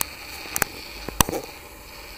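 Sharp percussive hits on stage over a steady background hiss: one at the start, then two quick pairs about half a second and a little over a second in.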